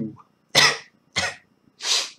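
A man coughing three times, short coughs about two-thirds of a second apart.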